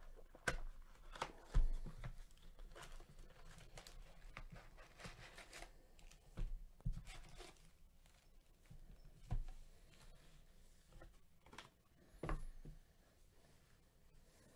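A cardboard trading-card box being opened and its foil-wrapped card packs taken out and stacked: irregular rustling and scraping, broken by several sharp knocks as the packs and box are set down.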